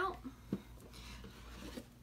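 Faint rubbing and handling noises as a small box is picked up, with a light knock about half a second in.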